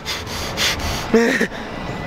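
A man's breathy exhale followed by a brief voiced grunt about a second in, over a steady low rumble of street traffic.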